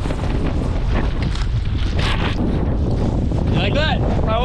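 Wind buffeting the microphone, a steady low rumble. A voice is heard briefly near the end.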